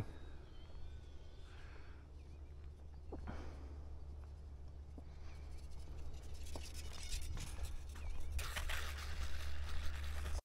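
Quiet outdoor ambience: a steady low rumble, a few faint ticks, and a soft hiss that swells near the end.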